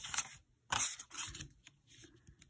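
A coin scratching the latex coating off a paper scratch-off lottery ticket: three quick scraping strokes in the first second and a half, then faint rubbing.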